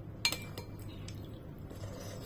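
A white ceramic soup spoon clinks sharply once against a bowl about a quarter second in, followed by a few faint ticks and scrapes of the spoon in the bowl as soup is scooped up.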